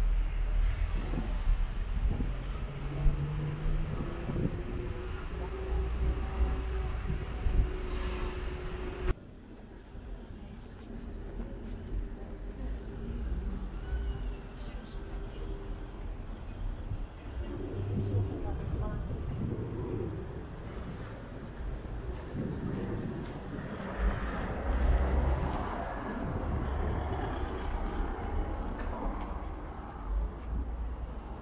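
Town street ambience: a car running close by with a steady low rumble, then after an abrupt cut about nine seconds in, quieter street background with passers-by talking and traffic.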